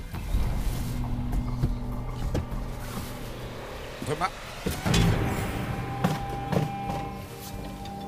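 Crowbar levering open a locked wooden door: a series of knocks and creaks, the loudest about five seconds in, over a steady background music drone.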